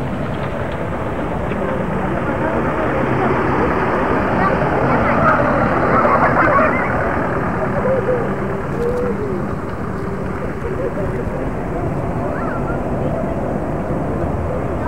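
Steady motor-vehicle running noise, a low hum, with indistinct voices coming through faintly in the middle.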